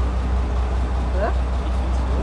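StuG III assault gun's engine running with a steady low rumble as the tracked vehicle creeps forward on sand.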